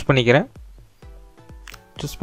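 A voice speaking for about half a second, then a quiet stretch with faint background music: a few soft held notes.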